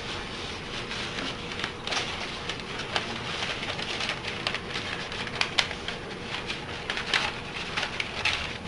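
Large paper strips rustling and crinkling as hands slide and fold them across a table, with many small crackles scattered through a steady rustle.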